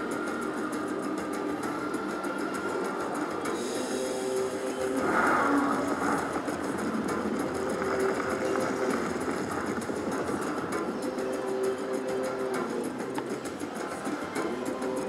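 Raging Rhino Rampage video slot machine playing its free-spins bonus music as the reels spin, over a haze of casino noise, with a louder, brighter burst about five seconds in.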